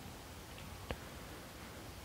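Faint room tone and microphone hiss, with a single short click a little under a second in.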